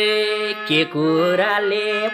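A man singing a verse of a Nepali lok dohori folk song in long, held notes that glide between pitches, with a short break a little under a second in. A steady low note holds beneath the voice.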